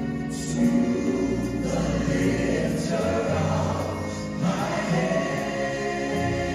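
Organ playing slow gospel chords, each held for a second or two over a sustained low bass line.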